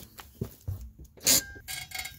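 A few metal knocks and a loud clank as a steel bar is set against the wheel studs of a Subaru Forester's rear brake rotor. From about halfway a faint squealing grind follows as the rotor turns against the worn parking-brake shoes inside it, which rub but do not hold it.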